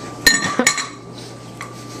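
Two sharp clinks of glass about half a second apart, with a ringing tone that dies away over the next second: a glass lid knocking against a large glass jar.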